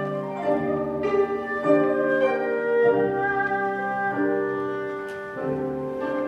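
Chinese-Western chamber ensemble playing: bowed erhu and cello notes over plucked guzheng and piano, in held notes that change about once a second.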